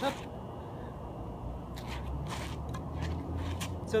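A spinning light-up staff swishing through the air two or three times, over a steady low outdoor rumble.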